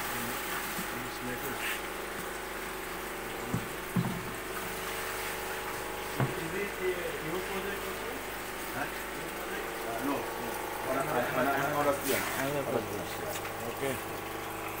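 Steady mechanical hum of an aquaponics system's pump, with water running.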